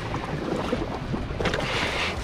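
Steady low rumble of wind and sea around an open fishing boat, with faint voices in the background and a short hissing rush about one and a half seconds in.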